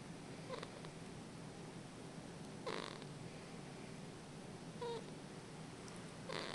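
A sleeping newborn baby's snuffly breathing, with three short snorting breaths, the loudest midway. A steady low hum sits underneath.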